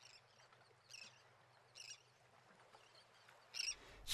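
Near silence, broken by three faint, brief high-pitched sounds about a second in, just before two seconds and near the end.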